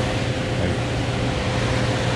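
Air handler blower running steadily: a rush of moving air with a low hum and a faint steady whine. The unit keeps running with its breakers switched off because the breakers have been bypassed.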